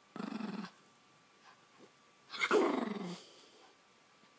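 Pomeranian growling in play while tugging at yarn: a short growl at the start, then a louder, longer one about two and a half seconds in that falls in pitch.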